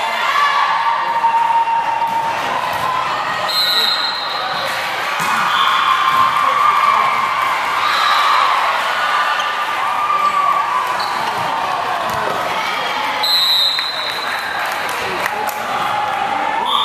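Busy indoor volleyball hall din: many players and spectators shouting and cheering over each other, with balls being struck and bounced. Short, high referee whistle blasts sound twice, near 4 seconds in and again about 13 seconds in.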